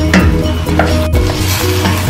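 Wooden spatula stirring pork and potatoes in a stainless steel pot, with the food sizzling and the spatula scraping and knocking against the pot.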